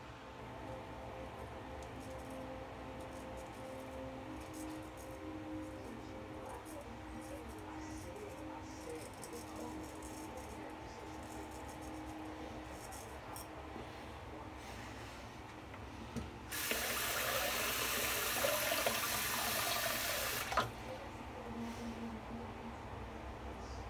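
Faint scraping strokes of a straight razor cutting lathered whiskers. About sixteen seconds in, a sink tap runs for about four seconds and then shuts off abruptly.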